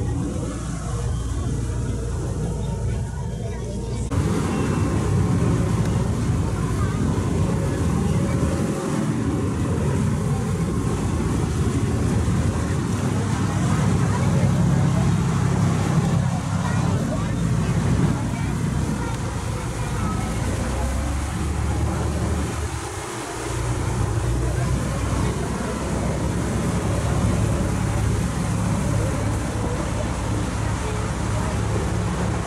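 A small boat's engine running with a steady low drone, with wind and water noise. It gets louder about four seconds in and briefly dips near the end.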